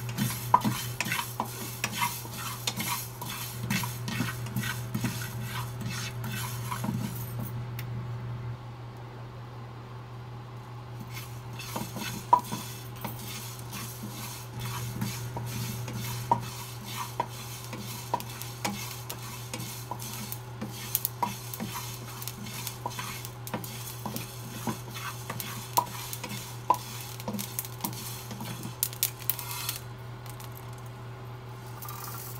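Wooden spatula stirring and scraping fenugreek seeds as they dry-roast in a nonstick frying pan: a quick, irregular run of scrapes and small ticks, easing off for a few seconds about a third of the way in, with one sharp louder tick shortly after. A steady low hum runs underneath.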